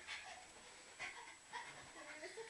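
A few faint, short, high squeaky sounds and breaths: stifled giggling.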